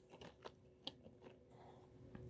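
Near silence with a few faint clicks in the first second, as a Lego minifigure is pulled off the studs of a baseplate and handled.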